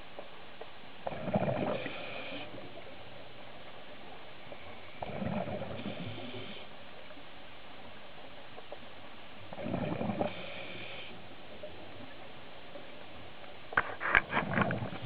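Scuba diver breathing through a regulator underwater: four breaths about four seconds apart, each a burst of bubbling with a higher hiss. The breath near the end is the loudest.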